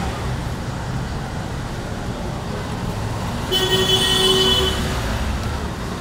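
Road traffic with a steady low rumble, and a vehicle horn sounding once for a little over a second just past the middle.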